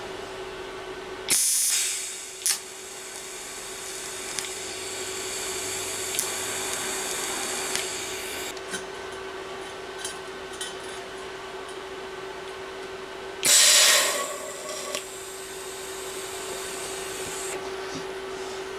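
Arc welding on steel: two short, loud bursts of arc as a steel plate is tacked to a steel tube, about a second and a half in and again near fourteen seconds, with a quieter hiss and a few small clicks between them over a steady hum.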